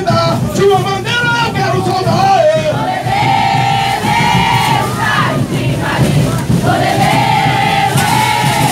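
A Congada Moçambique group singing a devotional chant together, the voices holding long notes through the second half.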